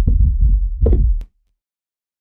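Sound effect made from a candle-flame recording and processed into a dense bass texture: a heavy low rumble under irregular crackling pulses, which stops with a click about a second and a quarter in.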